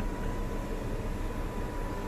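Power sunroof shade of a 2020 Ford F-150 King Ranch retracting, a faint steady motor whine that stops near the end, over steady background noise.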